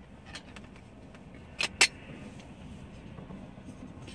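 A fresh, vacuum-sealed tin of pipe tobacco being opened: two sharp metallic pops close together about one and a half seconds in as the lid's seal breaks, with light clicks of handling the tin around them.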